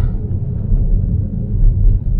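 Steady low rumble of tyres on a snow-covered road, heard inside the cabin of a Tesla Model 3 rolling downhill.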